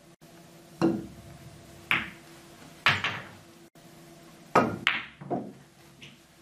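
A shot on a pool table, heard as a run of six sharp knocks and clacks as the cue strikes the cue ball, balls collide, and balls hit the cushions and drop into a pocket. The knocks come about a second apart, then three in quick succession near the end. A faint steady hum runs underneath.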